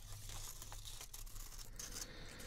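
Glossy magazine paper rustling and crinkling close up as it is handled and cut with scissors, as a continuous rustle rather than separate snips.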